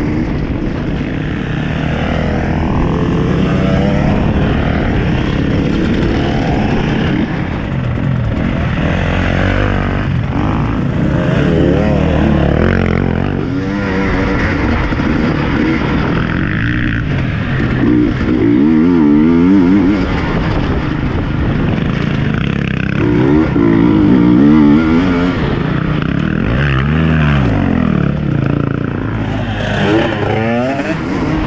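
Enduro dirt-bike engine heard from on board while riding a rough trail, revving up and easing off again and again as the throttle opens and closes.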